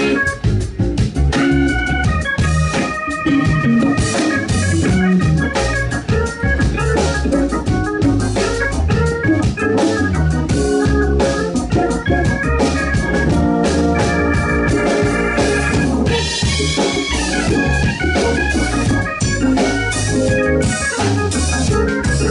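Live band instrumental jam: an organ solo played on a Roland combo keyboard in quick runs of short notes, over electric bass and a drum kit.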